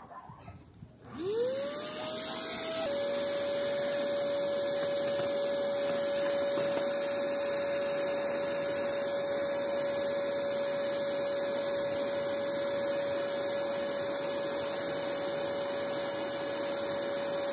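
Vacuum cleaner rigged as a bee vacuum switched on about a second in, its motor whining up in pitch as it spins up, then running steadily with a constant whine. It is sucking honeybees from a swarm through a hose into a bucket.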